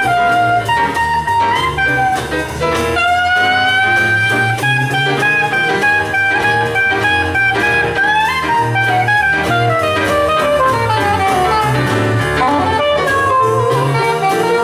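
Live traditional jazz band playing a foxtrot: a horn carries a melody with smooth slides between notes over double bass and drum kit keeping a steady beat.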